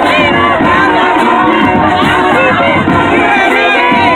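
A crowd in the stands cheering and shouting loudly and without a break, with a marching band's music underneath.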